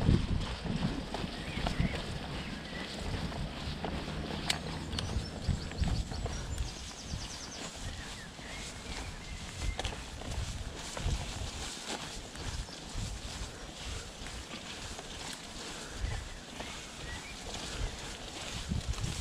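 Mountain bike ridden uphill on an overgrown dirt singletrack: steady tyre and riding noise with frequent small knocks and rattles from the bike, and plants brushing against it. Irregular low wind rumble on the camera mic.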